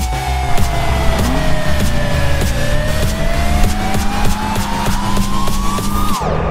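Porsche 928 V8 engine heard inside the car's cabin, mixed with background music that has a steady beat. The engine note falls for about two and a half seconds as the revs drop, then climbs steadily as it pulls again.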